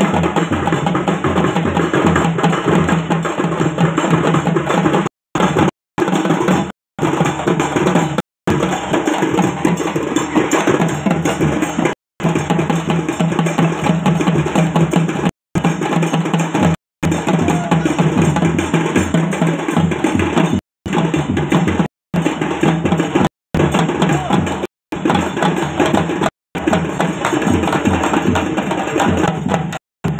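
Several barrel drums played together in a loud, continuous folk rhythm for a Bagha Nacha tiger dance. The sound cuts out for an instant about a dozen times.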